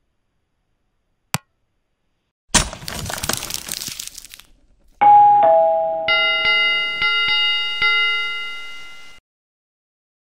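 Intro sound effects: a single click, then a burst of whooshing noise lasting about two seconds, then a two-note falling ding-dong chime about halfway. A bell-like notification ring follows, struck several times in quick succession, dying away and cutting off about a second before the end.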